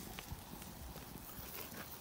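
Thick top sirloin steaks sizzling on the grate of a Santa Maria grill over a red oak wood fire, with a steady soft hiss and scattered small crackles and pops.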